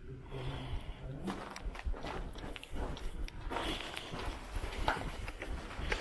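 Footsteps on a floor strewn with broken brick and debris, a string of uneven steps starting about a second in.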